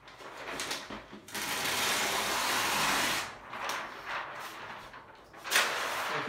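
A large flip-chart paper sheet rustling as it is turned over the top of the easel pad. There is one long rustle of about two seconds, then a shorter one near the end.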